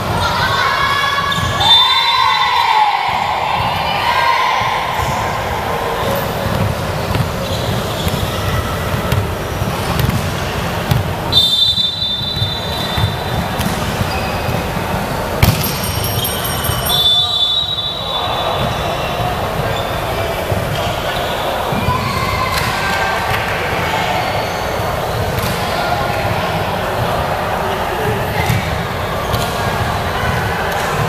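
Volleyball rally on a wooden indoor court: sharp ball hits, sneakers squeaking on the floor three times in short high bursts, and players' calls over constant echoing hall chatter.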